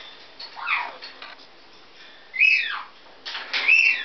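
Parrot whistling: three separate whistles, the first two sliding down in pitch, the last a high held note with a rough edge near the end.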